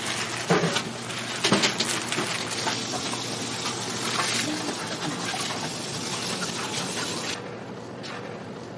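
Food-prep handling noise: thin plastic wrap crinkling as individually wrapped cheese slices are peeled and laid on sandwiches, over a steady hiss of shop background noise, with a couple of soft knocks in the first two seconds.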